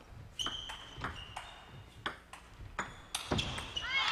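Table tennis ball being struck back and forth with paddles and bouncing on the table during a rally: a quick series of about eight sharp clicks.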